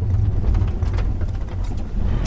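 Car engine and road noise heard inside the cabin while driving: a steady low rumble.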